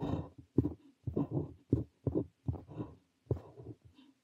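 Parker 45 fountain pen nib scratching across paper while writing Korean characters, in a run of short separate strokes, a few each second with brief gaps between.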